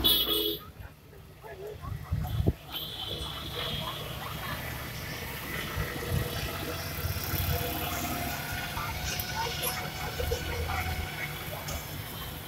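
Voices of people talking mixed with road traffic: motorcycles and vehicles passing. There is a loud burst right at the start and a sharp thump about two and a half seconds in.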